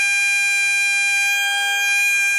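Nadaswaram playing Carnatic temple music, holding one long steady high note.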